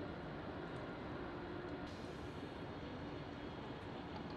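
Steady urban background rumble with an even hum and no distinct events.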